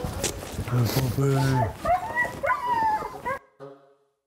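A pack of sled dogs barking, yipping and whining together in a noisy din that cuts off suddenly about three and a half seconds in.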